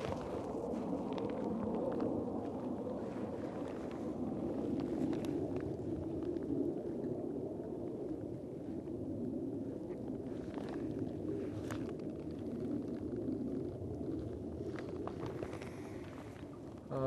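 Strong wind rumbling steadily on the microphone, with a few faint ticks of fishing tackle being handled.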